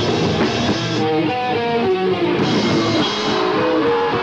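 Live screamo band playing: electric guitar over drum kit and cymbals. About a second in the cymbals drop away, leaving the guitar's single notes ringing out clearly, and the full band comes back in a little past halfway.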